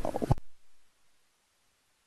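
A man's voice breaking off on a short syllable in the first moments, followed by a pause of near-total silence.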